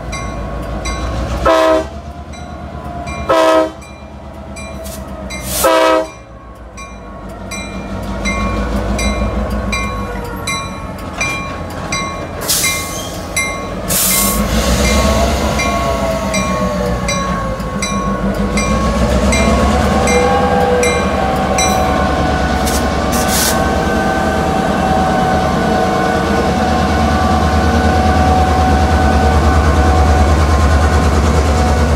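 EMD GP38-3 diesel locomotive sounding three short horn blasts about two seconds apart, then its engine throttling up, rising in pitch twice and settling into a steady loud run as it moves off. A bell rings at a steady pace throughout, and two short sharp hisses come about twelve and fourteen seconds in.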